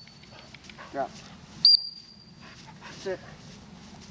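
A single sharp blast on a dog training whistle a little under halfway in, one steady piercing note. Around it a retriever puppy gives short whines, about a second in and again near the end.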